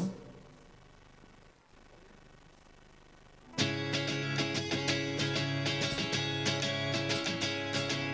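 A few seconds of near silence, then a guitar starts a song's intro about three and a half seconds in, playing a steadily repeated picked chord pattern.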